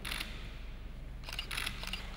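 Camera shutters of press photographers clicking: a quick burst at the very start, then a rapid run of clicks through the second half.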